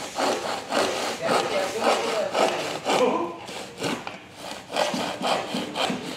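Hand saw cutting a thin wooden board in quick back-and-forth strokes, about two a second, with a rasping sound on each stroke.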